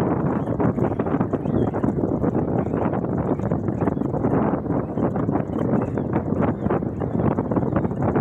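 Safari jeep driving slowly over a rough forest track: a steady rumble of engine and tyres, thick with irregular rattles and knocks from the vehicle.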